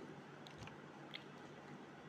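Faint chewing of a mouthful of rice, with a few small wet mouth clicks, about half a second and a second in, over a low steady hiss.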